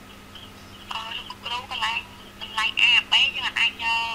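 A voice speaking, starting about a second in, thin and tinny with almost no low end, over a faint steady hum.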